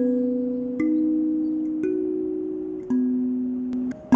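Gecko K17CAS flatboard kalimba playing a slow melody: four single thumb-plucked metal tines about a second apart, each note ringing on and fading.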